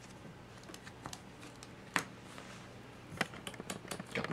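Sleeved trading cards being handled and laid on a table: faint light clicks and rustles, one sharp click about halfway, and a quick run of light taps near the end.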